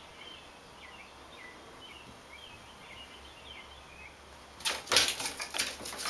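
Faint, short high chirps, then, about four and a half seconds in, a loud burst of scrabbling as a cat's claws scrape and skid on the bathtub while it lunges at a chipmunk.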